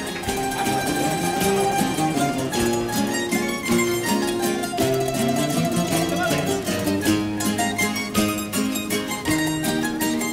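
A carnival coro's plucked-string band of bandurrias, laúdes and Spanish guitars playing an instrumental passage: quick, rhythmic plucked and strummed notes under a higher melody.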